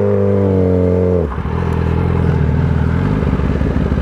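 Sport-bike engine accelerating hard from first gear, its pitch climbing and then holding high before dropping sharply about a second in. It then runs on at lower, less even revs.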